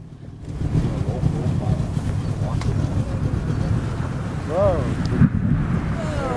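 Steady low rumble with wind buffeting the microphone. A person's voice calls out briefly about four and a half seconds in, and there is a sharp crack just after five seconds.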